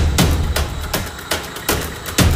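Background music with a percussive beat: sharp drum hits a few times a second over a steady low bass.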